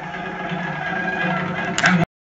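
Background music with held, sustained tones, growing louder, and a sharper, louder accent near the end.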